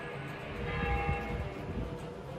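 Bells ringing: several long, clear tones that swell about half a second in and slowly fade, over a low rumbling noise.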